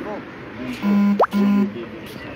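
Police vehicle's electronic siren sounding a brief burst: two short, flat, buzzy horn tones about half a second apart, split by a quick rising whoop.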